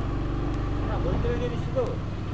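A motor vehicle engine running with a steady low rumble, and a faint voice briefly in the background partway through.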